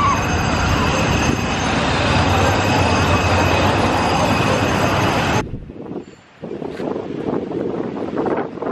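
Loud, steady road traffic on a busy city street, with a van passing close by. The traffic cuts off suddenly about five and a half seconds in, and much quieter outdoor sound follows.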